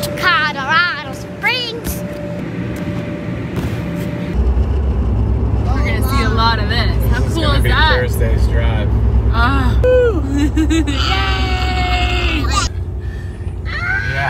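Excited children's voices and shouts, then, about four seconds in, the steady low rumble of road and engine noise inside a car's cabin at highway speed, with voices carrying on over it.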